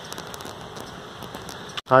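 Steady hiss of falling water from an ornamental pond fountain, with faint scattered ticks; it breaks off suddenly near the end.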